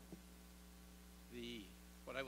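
Near silence apart from a steady low electrical mains hum. A man's voice makes one short sound about three-quarters of the way through.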